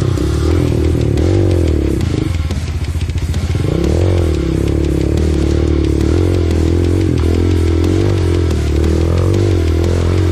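Dirt bike engine pulling uphill on a rough dirt trail, its revs rising and falling with the throttle. The revs sag about two seconds in, then pick up again near four seconds.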